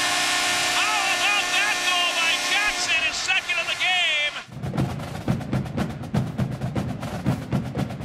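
Arena goal horn sounding a steady chord over crowd cheering and whoops after a hockey goal. About four and a half seconds in it cuts off abruptly, replaced by drum-heavy music with a steady beat.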